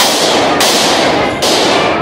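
Sound-effect stinger for a news title card: three sharp hits in quick succession, each fading out in a ringing tail.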